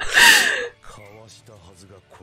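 A person's sharp, breathy gasp of laughter lasting about half a second, followed by faint dialogue from the anime playing underneath.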